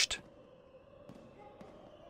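A man's narrating voice cuts off at the start, then a faint, steady background drone with a few held tones, a quiet music bed under a pause in the narration.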